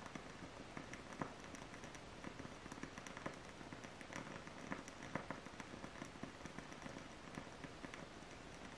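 Faint, irregular small clicks and light crackling over low background noise.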